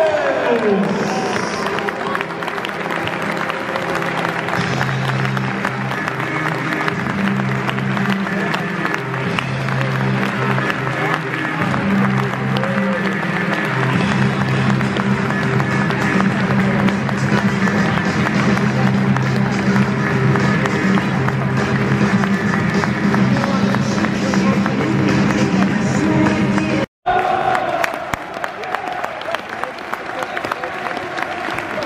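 Music played over a stadium's loudspeakers as the teams come out, with crowd applause beneath it. The sound drops out for a moment near the end, and after that applause is the main sound.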